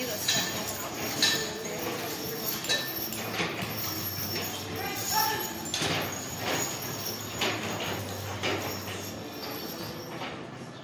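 Draft horses standing in harness, with scattered short clinks and knocks from harness and hooves, over indistinct voices.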